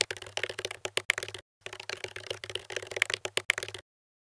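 Typing sound effect: a rapid run of key clicks, with a short break about a second and a half in, stopping just before the end.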